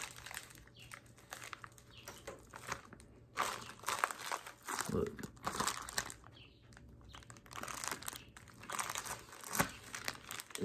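Clear plastic bag wrapping on detailing-product bottles crinkling and rustling as the bottles are handled, in irregular bursts.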